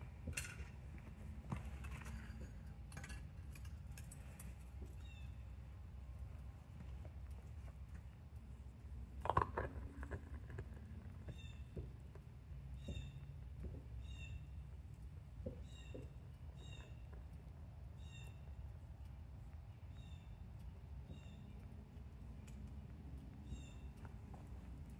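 Low steady rumble with a few sharp metallic clinks of crucible tongs handling the crucible of molten aluminum, the loudest about nine seconds in. Then, while the metal is poured into the sand mold, a short high chirp repeats about once a second.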